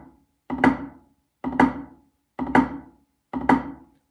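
Drumsticks playing drags on a rubber practice pad: a soft, bounced double-stroke grace note falling into a loud accented stroke. It is repeated evenly about once a second, four times, with one hand leading.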